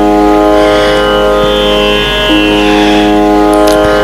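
Tanpura drone: a steady buzzing chord of held tones, its strings re-plucked in a slow cycle that renews about every three seconds.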